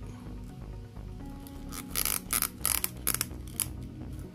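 Hard plastic parts of a Marvel Legends Kree Sentry build-a-figure clicking and scraping together as the right leg is pushed into its hip joint, with a quick run of sharp clicks in the second half.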